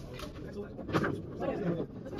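Indistinct talk of people in the background of a snooker room, loudest from about a second in.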